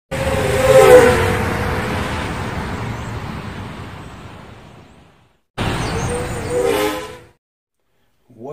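Intro sound effect over the title card: a loud rushing noise with a pitched tone that swells about a second in and fades away over about four seconds, then a shorter repeat of the same sound near the end.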